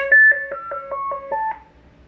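VC-200-style roger beep number 2 from a Stryker SR-955HP CB radio: a quick run of short electronic tones at changing pitches, mostly stepping downward, ending about a second and a half in. The roger beep sounds when the microphone key is released, marking the end of a transmission.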